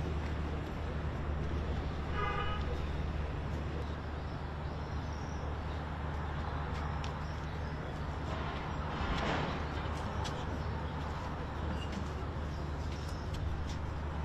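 Steady outdoor city background noise, with distant traffic. A short car horn toots about two seconds in, and a swelling rush of noise passes around nine seconds.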